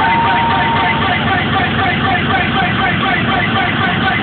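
Loud electronic rave music from a live DJ set, played over the venue's sound system, with a fast, even, repeating beat and a held synth note in the first second. It is recorded on a small camera microphone and sounds dull-topped and crushed.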